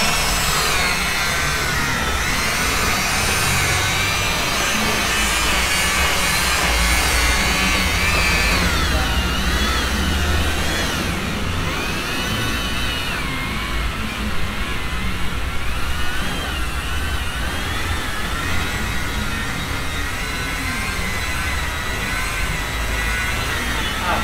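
Electric rotary polisher running continuously while buffing fresh car paint, its motor whine wavering up and down in pitch as the pad is pressed against and moved over the panel.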